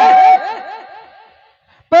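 Chuckling laughter: a quick run of short rising-and-falling voice sounds that fades away over about a second and a half. A held tone cuts off shortly after the start.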